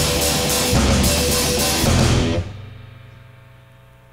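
Live rock band with drum kit and guitar playing the last bars of a song. About two seconds in, the band stops and the chords and cymbals ring out and fade, leaving a low steady hum.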